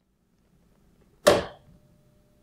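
A single sharp click a little over a second in as power is connected to the LED headlight's daytime running light pin and the light switches on, followed by a faint steady high tone.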